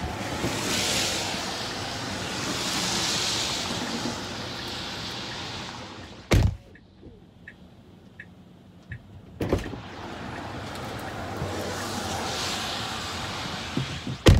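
Tesla Model 3 driver's door: with the door open, a steady hiss of the wet street comes into the cabin. About six seconds in the door shuts with a solid thunk and the cabin goes quiet but for a few faint ticks; about three seconds later the door opens again with a sharp click and the street hiss returns.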